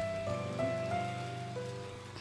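Inflatable snow globe's blower fan running, whirling foam snow flakes that patter against the inside of the vinyl dome like rain.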